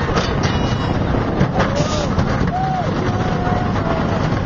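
Sooperdooperlooper roller coaster train running at speed on its steel track, heard as a loud, steady rush of wind and track rumble. Riders let out a few drawn-out yells in the middle and near the end.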